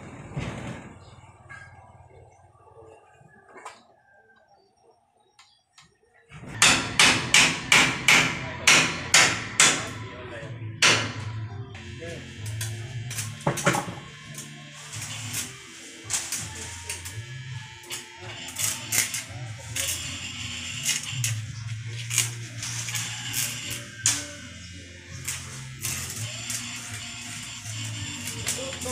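Background music that cuts in suddenly about six seconds in, with a strong beat of about two strokes a second at first and a voice over it; the first few seconds are fairly quiet.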